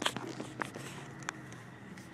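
Car cabin noise while driving slowly, a low steady hum with a few soft clicks in the first second and a half.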